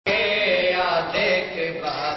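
Young men chanting a noha, a Shia mourning lament, into a microphone in long held notes.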